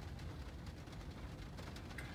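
Faint, steady low background noise inside a car cabin, with no distinct events.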